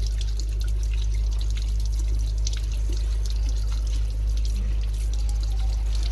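Water from a chrome sensor tap running steadily onto hands and splashing into a ceramic undercounter basin, over a steady low hum.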